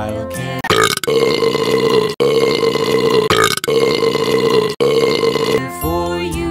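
A run of about four long, loud burps, each a second or so, dubbed over a children's song in place of the sung line, with the song's backing music under them.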